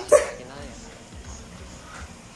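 A man's high-pitched, yelping laugh, with one short loud burst right at the start, then fading to a low background.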